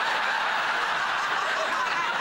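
Studio audience laughing, a long, steady wave of laughter from many people at once.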